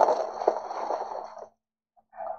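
Plastic shrink wrap on a cardboard trading-card blaster box crinkling and rustling as the box is handled, stopping abruptly about one and a half seconds in.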